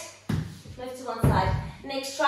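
A woman speaking, with low rumbling thumps under her voice, once early on and again through the second half.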